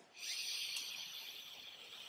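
A slow inhalation through the right nostril, the left held closed by the fingers in alternate-nostril breathing (Nadi Shodhana): a soft hiss of air that begins just after the start and slowly fades.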